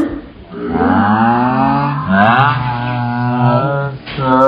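A girl's voice making two long, low, drawn-out vocal sounds, a mock roar or chant rather than words: the first starts about half a second in, the second about two seconds in and holds until near the end.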